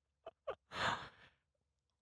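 A person's short breathy exhale, like a sigh, about a second in, after two faint short clicks.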